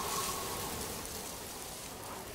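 Steady rain-like hiss of an outro sound effect, easing off slightly, with a faint thin tone in the first second.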